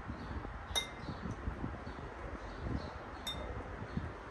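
A metal spoon clinking twice against a dish, about two and a half seconds apart, each clink ringing briefly.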